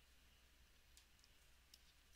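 Near silence with a few faint, short clicks: a stylus tapping on a pen tablet while handwriting.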